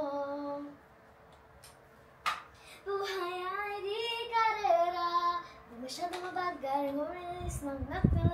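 A young woman singing a slow melody in a high voice, with long held notes that slide from pitch to pitch. The singing breaks off for about two seconds near the start, and there is a single knock at the end of that gap.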